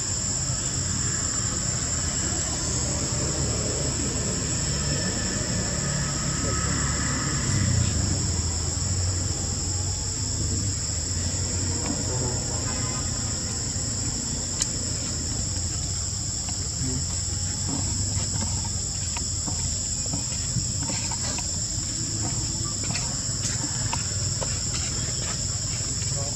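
Steady, high-pitched chorus of forest insects, two unbroken shrill tones held throughout, over a low rumble of background noise.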